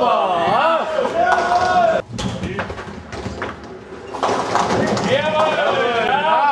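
A voice singing in long, wavering notes that break off about two seconds in; a quieter stretch of scattered knocks and clatter follows, and the singing comes back with a shouted "yeah" near the end.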